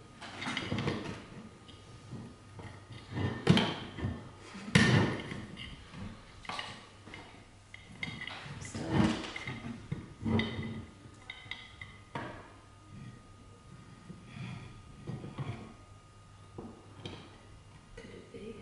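Walking stick and roofing slate clattering, knocking and scraping against each other and the wooden floor as the slate is worked onto the stick's tip. The knocks come irregularly, loudest twice a few seconds in, and smaller ones continue later.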